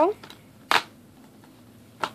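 Plastic Blu-ray cases being handled: one short, sharp clatter about three-quarters of a second in, and another at the very end.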